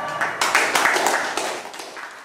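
Audience applause: many people clapping in a small room. It starts about half a second in and tapers off near the end.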